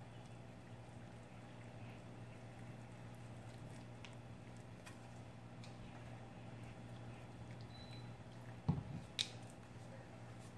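Faint squishing and scraping of a wooden stir stick mixing non-sanded grout with water in a plastic tub, over a steady low hum. A low thump near the end, followed quickly by a sharp click.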